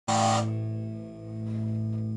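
Electric guitar striking a low chord with a bright, sharp attack and letting it ring steadily.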